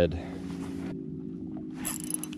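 Steady low hum of an electric trolling motor, with faint rustling of hands and fishing line for about the first second. Near the end comes a short run of clicks from the spinning reel.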